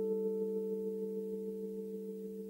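Music: a sustained keyboard chord, a few steady tones held and slowly fading, in the quiet gap between phrases of a pop song's intro.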